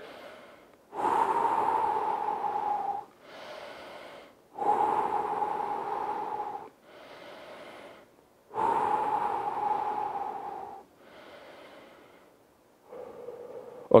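A man taking slow, deep recovery breaths after a hard workout set: three long, louder breaths of about two seconds each, alternating with shorter, quieter ones.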